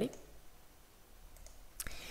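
A computer mouse clicking: a couple of faint clicks and then one sharp click near the end, over low room tone.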